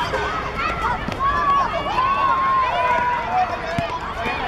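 Children's voices shouting and calling over one another, high-pitched, with one long drawn-out call in the middle.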